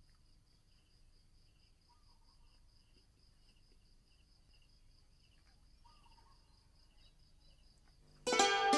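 Near silence with faint insect chirping: a steady pulsing high trill and a shorter chirp repeating every second or so, with two faint whistled calls about two seconds and six seconds in.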